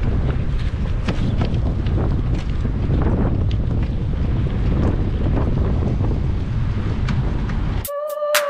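Wind buffeting the camera microphone on a moving bicycle: a steady low rumble with scattered clicks and rattles from the bike. It cuts off abruptly near the end as music comes in.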